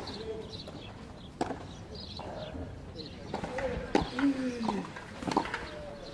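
Pigeons cooing in low, falling notes, with a few sharp tennis-ball strikes; the loudest strike comes about four seconds in.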